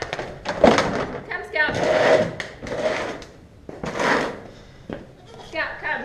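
Indistinct voices in short bursts, without clear words, mixed with noisy handling sounds.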